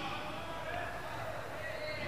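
Faint voices in the background over low room noise, with no clear recitation.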